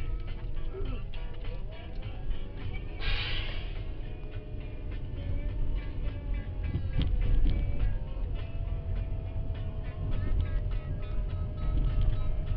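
Music playing in a moving car's cabin over the steady low rumble of the road and engine, with a brief hiss about three seconds in.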